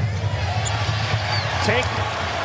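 Basketball game sound in an arena: a steady crowd bed with a basketball bouncing on the hardwood court.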